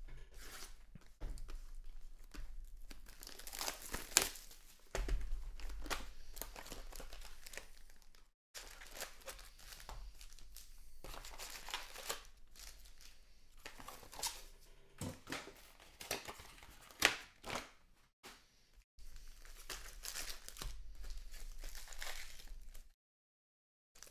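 Packaging being handled: a Donruss Optic card hobby box torn open and its wrapped card packs pulled out and shuffled, in a run of tearing and crinkling with sharp louder rips about four seconds in and near seventeen seconds.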